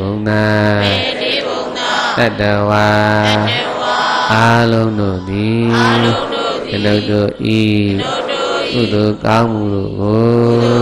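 Buddhist devotional chanting: voices reciting in long held notes, phrase after phrase with short breaks, the pitch dipping and rising on some syllables.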